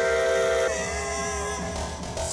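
Loopstation beatbox performance: layered, looped vocal tones held as a chord over a steady low beat. The chord changes about two thirds of a second in and drops out briefly near the end.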